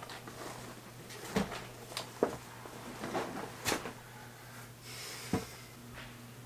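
Scattered knocks and clatters of a soft-sided suitcase and its contents being handled on a bed, five or so sharp knocks over a few seconds, with a faint low hum beneath.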